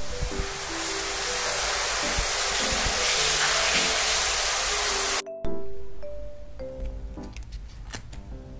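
Sound effect of a shower running: a steady, loud hiss of spraying water over background music with a simple melody, cutting off suddenly about five seconds in. Light paper-handling clicks and rustles follow under the music.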